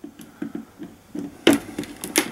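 Light plastic clicks and knocks as a wall-plugged WiFi range extender and its swivelling antennas are handled against the outlet, with one sharper click about one and a half seconds in.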